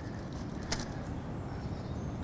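Quiet outdoor background: a low, steady rumble with one faint click a little under a second in.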